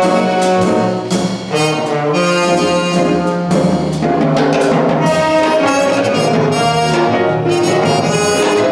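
Small jazz ensemble playing: trumpet, trombone and tenor saxophone sounding together in long held notes over archtop guitar, piano, upright bass and drums.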